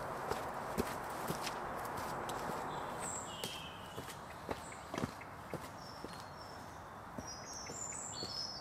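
Footsteps climbing sandstone steps and walking on a dirt path, about two steps a second, over a steady outdoor hiss. A few short bird chirps come in partway through and again near the end.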